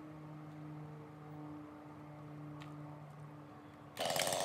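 Faint ambient background music of low held tones that shift now and then. At the very end a Husqvarna 390 XP chainsaw starts running loudly.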